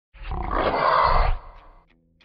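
Animal roar sound effect, loud for about a second, then dying away quickly.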